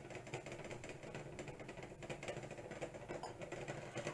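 Faint, light irregular clicking over a low steady hum.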